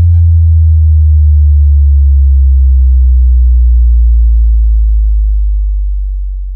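Very loud sustained sub-bass synth note closing an electronic 'cek sound' DJ track made to test sound-system subwoofers. The note slides slowly down in pitch and starts to fade near the end, while the last echo of the track's rhythmic hits dies away in the first half second.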